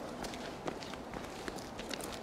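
Footsteps of two people walking briskly on a paved path, short sharp steps falling irregularly a few times a second.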